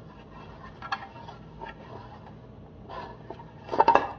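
Hands handling a JBL PRX800-series speaker's moulded plastic tweeter horn and compression driver. There are a few faint clicks and rubs, then a quick cluster of sharp knocks and clatter near the end.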